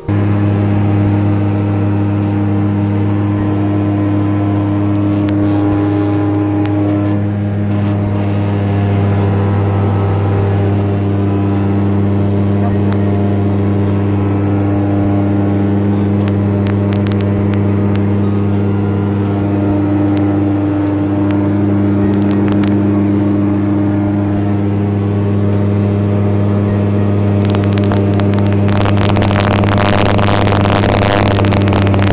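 ICON A5 light amphibious aircraft's Rotax 912 iS four-cylinder engine and propeller droning steadily in cruise flight, heard from inside the cockpit. A rushing noise swells near the end.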